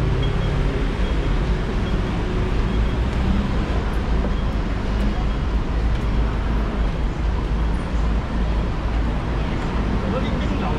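Busy city street ambience: a steady low rumble of traffic and vehicle engines with indistinct voices of people walking by.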